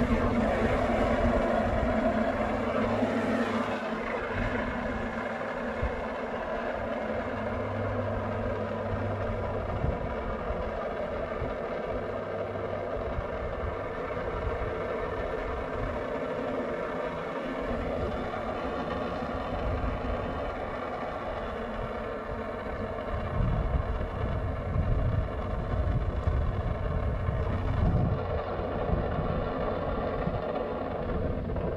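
Pressure washer motor running steadily with water spraying, with wind gusting on the microphone, stronger in the second half.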